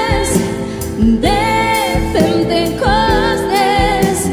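Two women singing a Christian worship song into microphones, their held notes wavering with vibrato, over an instrumental accompaniment.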